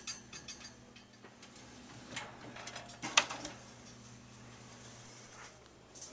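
A faint steady low hum with a few light clicks and ticks, the clearest about two and three seconds in.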